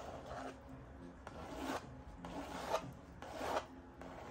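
Drawing pencil scratching across paper on an easel in four short strokes, each about half a second long, as lines of a portrait sketch are drawn.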